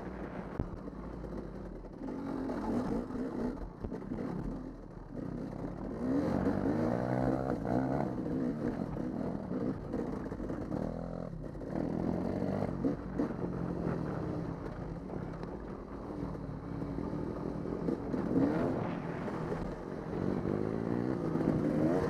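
Dirt bike engine pulling along a trail, its pitch climbing and dropping back again and again as the throttle is opened and closed.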